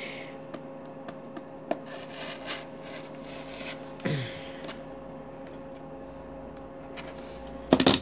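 Rotary cutter rolling through layered cotton quilting fabric on a cutting mat: a faint rasping cut with light clicks and taps from the cutter and ruler, over a steady low hum. A louder clatter of the cutter and ruler being handled comes just before the end.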